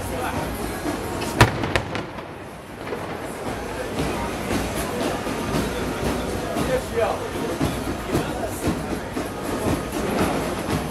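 A large crowd's noise, with three sharp bangs about a second and a half in, the first by far the loudest and two fainter ones following close behind.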